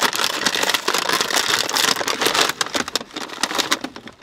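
A crinkly plastic snack bag of Cheez-It Puff'd crackers being pulled open and handled, with dense crackling for the first couple of seconds that then thins out and fades.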